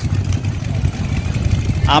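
Wind buffeting a handheld microphone on an open beach, heard as a loud, uneven low rumble, over a faint crowd background.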